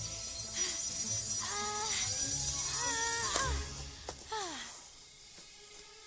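Animated-film soundtrack: music with several short sliding cries that rise and fall. A loud rushing hiss fades out about three and a half seconds in.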